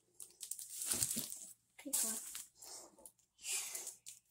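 Plastic wrappers on snack cakes crinkling in three short bursts as they are handled, mixed with a child's voice.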